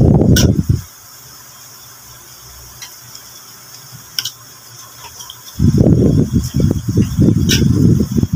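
Raw fish pieces being mixed with seasonings by hand in a ceramic bowl: loud, low, rough rubbing and squelching for about the first second, then again from a little past halfway to the end, with a few light clicks in between.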